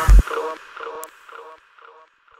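Dark electronic music ending: a last deep kick drum hit, then a short synth blip that repeats about three times a second and fades away.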